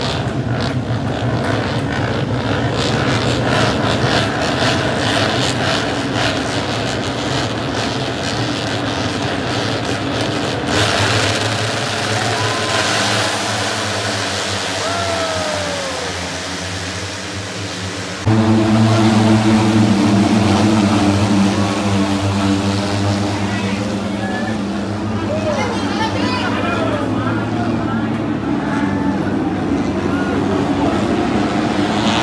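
Racing motorcycle engines running at speed around a circuit, a continuous engine noise with a few falling pitch sweeps as bikes go past. A little past halfway the sound steps up suddenly to a louder, steadier engine drone.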